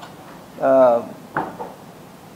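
A man speaking into a microphone utters a single short syllable, then a sharp knock or click comes about a second and a half in, followed by low room hiss.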